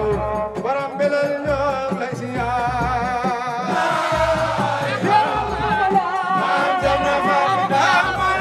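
A man singing a devotional chant through a microphone and loudspeakers, with other men's voices singing along, the melody wavering and ornamented. Deep thuds recur beneath the singing, and the sound grows fuller about four seconds in.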